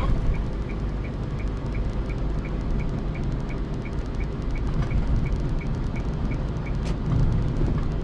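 Car cabin road and engine noise, a steady low rumble, with a turn-signal indicator ticking evenly about three times a second as the car moves over to the left. The ticking stops near the end.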